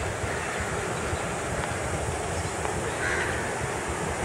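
A crow caws once about three seconds in, over the steady low rumble of an approaching diesel-hauled train.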